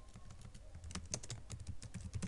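Typing on a computer keyboard: an uneven run of quick key clicks, several a second.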